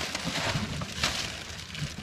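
Crackly rustling of a thin black plastic bag held open by hand, with small irregular crinkles and one slightly louder rustle about a second in.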